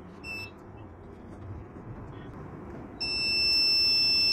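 Luminous home inverter's low-battery warning buzzer, the sign of a run-down Exide battery. A short high beep comes about a quarter second in, then about three seconds in a continuous high-pitched tone starts and holds as the inverter cuts out.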